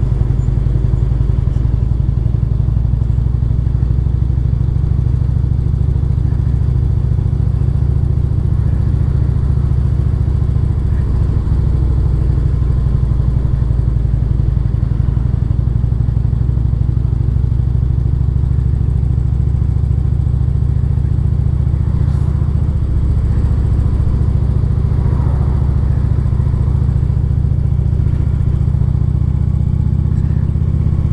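Cruiser motorcycle engine running steadily at low town speed, heard from the rider's seat as an even, low rumble.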